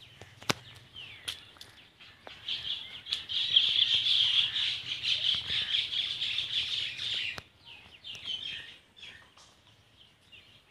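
Birds chattering and chirping together in a loud, dense burst lasting about five seconds, which stops abruptly; softer scattered calls and a few sharp clicks come before and after it.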